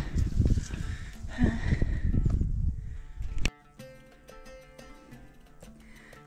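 Wind rumbling on the microphone of a camera held outdoors while riding, with a brief hum of a voice about a second and a half in. About three and a half seconds in, the rumble cuts off suddenly, leaving soft background music.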